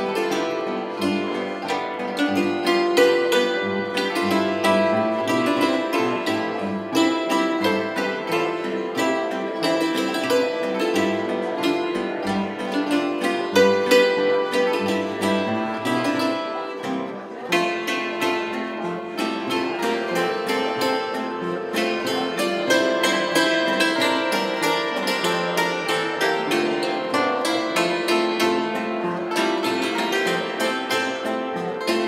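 Austrian folk string music played live on two concert zithers and a hammered dulcimer (Hackbrett). The plucked and struck strings play a lively tune together, with no pause.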